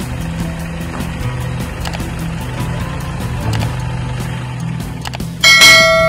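A loud bell-like notification chime, several pitches ringing together and fading, sounds near the end over a steady low hum.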